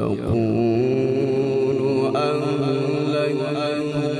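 A man's melodic Quran recitation (tilawat). The voice glides down at the start, then holds one long, slightly wavering note.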